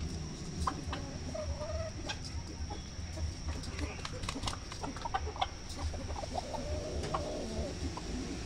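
Hens and roosters clucking as they feed, with a drawn-out wavering call about two seconds in and a longer one near the end, over scattered short sharp ticks.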